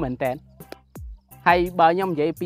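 A man speaking Khmer over background music with steady sustained low notes.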